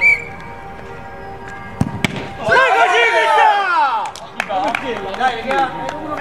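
A sharp knock, a few more knocks about two seconds in, then men's voices shouting loudly over each other.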